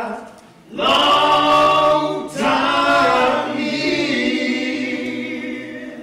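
Several voices singing a cappella in harmony: two long held chords, the second slowly fading away near the end.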